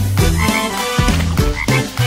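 Short cartoon frog croaks over the backing music of a children's song.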